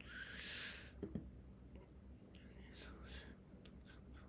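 Quiet room with a person's breathy exhale at the start, a couple of soft clicks about a second in, and faint whispering a little later.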